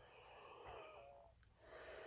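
Near silence: faint room tone and a soft breath.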